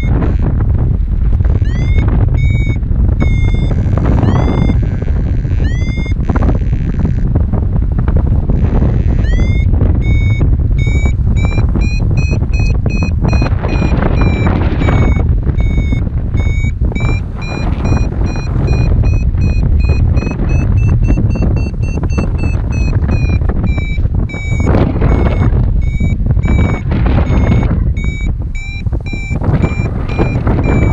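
Paragliding variometer beeping in a fast series of short tones, its pitch drifting up and then back down with a couple of short breaks: the signal of the glider climbing in rising air. Heavy wind rush on the microphone runs underneath.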